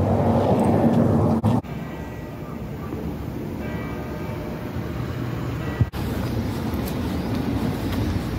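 Outdoor street ambience: a low, steady rumble, loudest for the first second and a half, then quieter background noise. The sound changes abruptly twice, at about a second and a half and about six seconds in.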